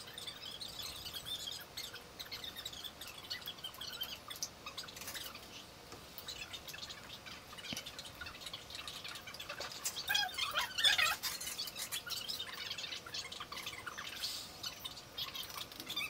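Light scattered clicks and clinks of a bicycle chain and hand tools being handled, with birds chirping in the background, a brighter run of chirps about ten seconds in.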